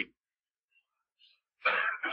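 An elderly man's voice on an old cassette recording ends a word, then about a second and a half of dead silence before the voice starts again near the end.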